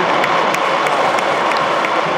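Stadium crowd applauding: a steady din of many people clapping, with single sharp claps standing out a few times a second.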